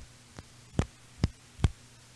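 Faint steady electrical hum with four short clicks, about 0.4 s apart.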